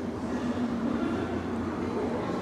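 Steady low rumble of indoor room noise, continuous and even, with no distinct event standing out.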